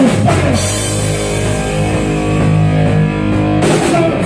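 Live rock band playing an instrumental passage. Distorted electric guitar and bass hold sustained chords with the drums pulled back, then the drum kit and cymbals come back in loudly just before the end.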